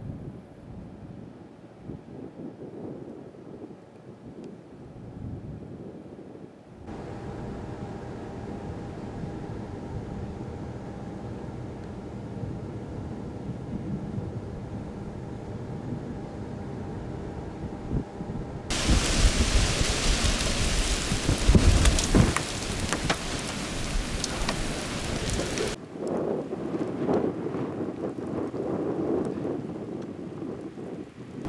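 Thunderstorm sound: a low rumble under a rushing hiss of wind and rain. About two-thirds of the way in it turns loud and rushing for several seconds with heavy low rumble, then eases back.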